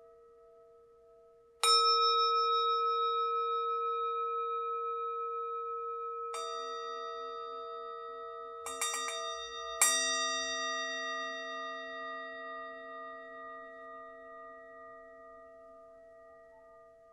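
Hand-hammered Tibetan singing bowl struck with a mallet: firmly about two seconds in, more softly at about six seconds, a light tap near nine seconds and firmly again near ten seconds. Each strike leaves a long ringing tone that pulses slowly as it dies away.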